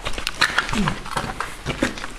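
Irregular knocks and clicks from people moving about and handling gear, with a short falling voice sound a little under a second in and brief snatches of voice near the end.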